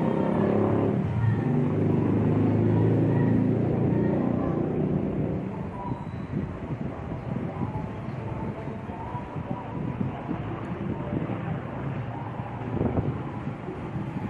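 Low background rumble, like a vehicle going by, loudest for the first four seconds or so and then fading to a quieter, even background noise.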